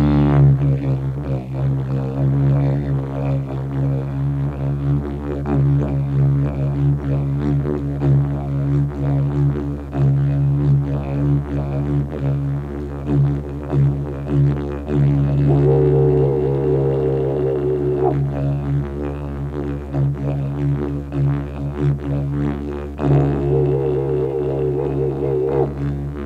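Didgeridoo playing a continuous low drone at one steady pitch, with a pulsing rhythm in its tone. Twice, once in the middle and again near the end, a wavering higher overtone sounds over the drone for a few seconds.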